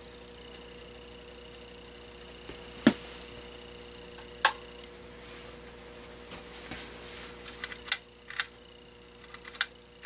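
Steady faint electrical hum with a few sharp, separate clicks; near the end, a quick run of small clicks as the metal bead pull chain of a porcelain lamp socket is handled.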